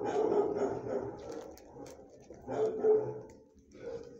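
Dog vocalizing in two long rough bouts and a short third one while it mouths a fleece blanket.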